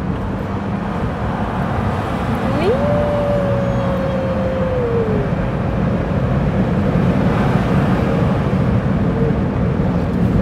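Car cabin noise of a Honda under way: steady engine and tyre noise that slowly grows louder as the car gathers speed. A few seconds in, one short held tone rises quickly, holds and then sinks a little.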